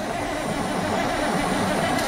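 Caterpillar diesel of a 1983 Peterbilt 362 cabover cranking over steadily on its starter after sitting parked for 14 years, with the hiss of aerosol starting fluid sprayed into its air intake; it is not running on its own yet.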